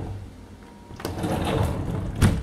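Sliding glass door rolling along its track: a low rumble with a click about a second in.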